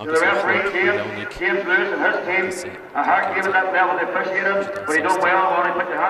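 A man making a speech over a public-address system.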